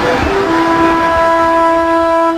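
Brass instruments enter with a held chord about half a second in, over crowd noise that fades away: the opening of a piece of music.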